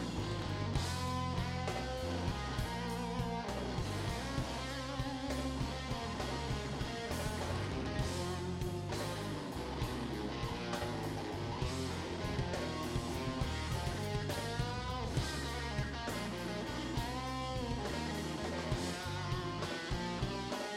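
Live electric guitar solo on a Les Paul-style guitar, a lead line with bent notes, over the band's bass and drums.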